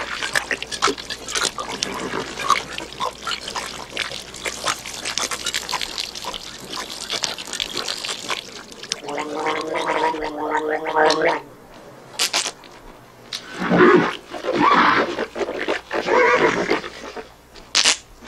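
A man drinking greedily from a leather canteen, with water splashing and gulping, then a long held gargle and several loud vocal gargles and exhalations. A sharp spray of spat water comes near the end.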